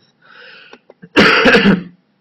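A man coughs: one loud, rough burst of under a second about halfway in, after a faint breath in.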